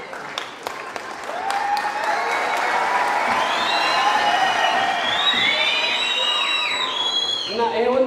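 Audience applauding and cheering, with several high, drawn-out voices calling out over the clapping from about a second and a half in.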